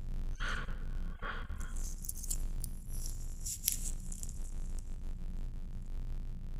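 Rustling and crackling close by: two short rustles in the first second and a half, then fainter high crackle, over a low steady rumble.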